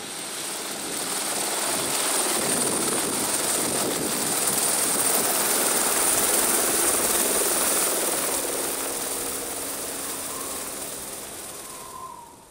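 Turbine helicopter lifting off and climbing away: rotor and engine noise swells, is loudest midway, then fades, with a steady high turbine whine.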